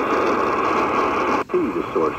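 Qodosen DX-286 portable radio's speaker on the AM band, giving a steady noisy hiss on 740 kHz. About one and a half seconds in, the sound cuts out briefly as the radio tunes up a step, and a station's spoken voice comes through on 750 kHz.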